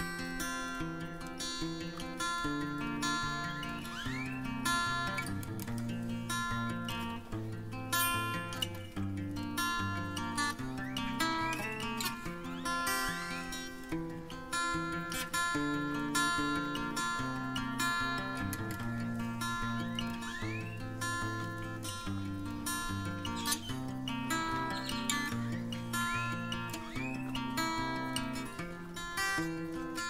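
Acoustic guitar music, plucked and strummed notes playing steadily throughout.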